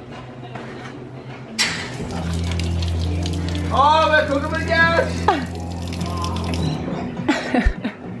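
Electric water pump of a camper's onboard water system running with a steady low hum for about five seconds, water gushing out onto concrete. A voice calls out briefly in the middle.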